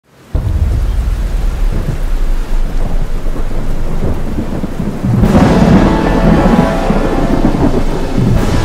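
Thunderstorm sound effect: heavy rain with continuous rumbling thunder, starting abruptly and swelling louder about five seconds in.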